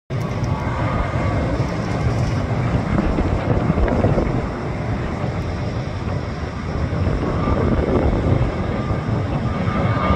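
Twin-engine jet airliner's engines running as it rolls along the runway, heard as a steady low rumble with a faint whine above it.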